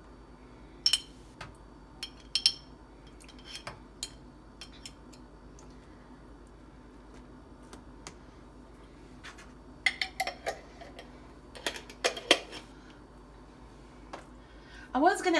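A fork clicking and tapping against a jar and a plastic food container while hot banana pepper rings are laid onto a salad. A few scattered clicks come in the first seconds, then a quicker cluster of louder taps near the end.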